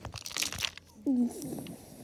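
Crinkling of clear plastic wrap on a toy train as it is handled, in a short crackly burst over the first half-second or so. About a second in, a brief falling voice sound.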